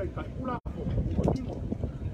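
A man speaking, with wind rumbling on the microphone; the sound cuts out completely for an instant about half a second in.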